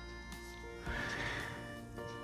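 Soft background music of steady sustained tones. A little under a second in, a marker squeaks across a whiteboard for about two-thirds of a second as a short line is drawn.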